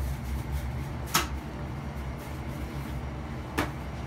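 Hands rolling pretzel dough on a stainless steel worktable, with two sharp taps on the steel, one about a second in and one near the end, over a steady low room hum.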